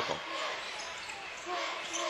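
Steady crowd noise in a basketball gymnasium during live play, with a basketball bouncing on the hardwood court and faint voices in the crowd.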